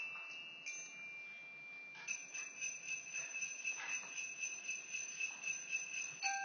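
High, bell-like metal tones from a percussion ensemble's mallet instruments, ringing on after each strike. A few separate strokes give way at about two seconds in to quick repeated strokes over the held high ring.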